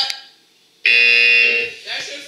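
A game-show buzzer sound effect goes off once: a harsh, steady buzz that starts suddenly about a second in, holds for under a second, then dies away.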